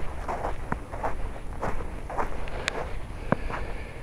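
Footsteps on snow crusted with ice from freezing rain and sleet, each step breaking through the crust, about two steps a second with a few sharper cracks.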